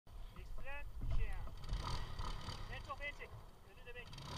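Faint, distant voices calling and talking in short phrases over a low rumble.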